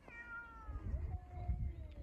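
Domestic cat yowling in a territorial standoff with another cat. It is one long, drawn-out call that falls in pitch for about a second and then holds at a lower pitch.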